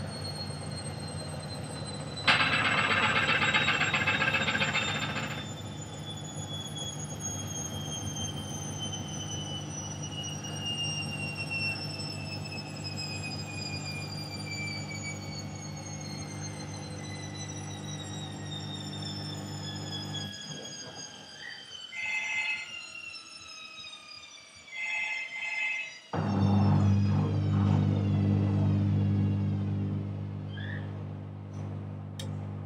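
Front-loading washing machine running, its motor whine falling slowly in pitch as the drum slows, over a steady low hum. A burst of hiss comes about two seconds in and lasts a few seconds. The hum nearly stops about twenty seconds in, then starts up again louder near the end.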